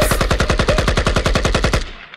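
Automatic-gunfire sound effect dropped into a hip hop track: a rapid, even burst of about a dozen shots a second that stops near the end and fades out.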